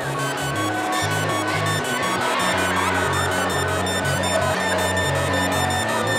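littleBits Synth Kit (Korg-designed, MS-20-modelled oscillator bits) playing a repeating step-sequenced pattern of low synth notes through its speaker, the delay's feedback turned down.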